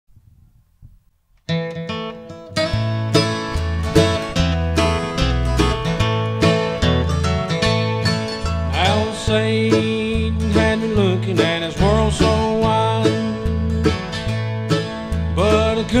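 Instrumental intro of a country gospel song: strummed and plucked guitar over a steady bass line, starting about a second and a half in. About halfway through, a lead line with sliding notes comes in.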